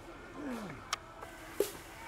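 A drawn-out shouted drill command whose pitch falls steeply, followed by two sharp knocks about two-thirds of a second apart from the marching squad's drill.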